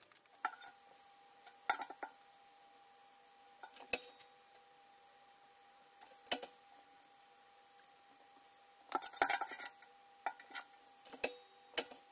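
Scattered clinks and knocks as a clamshell heat press and craft tools are handled, with a quick cluster of knocks about nine seconds in and several more near the end. A faint steady high hum runs underneath from about half a second in.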